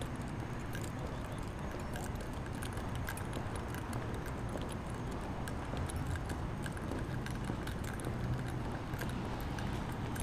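A camera carried by a walking person: a steady rumble of handling and wind noise on the microphone, with many faint, scattered clicks and jingles.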